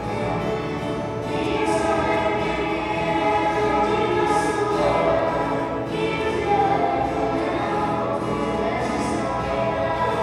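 Ensemble of ten-string violas caipira and a guitar strumming a pagode de viola rhythm, with young voices singing together into the microphones.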